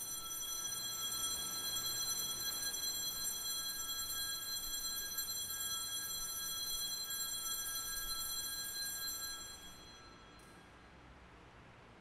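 Altar bells rung at the elevation of the chalice, marking the consecration at Mass: a steady, high, shimmering ringing of several bell tones that stops about ten seconds in.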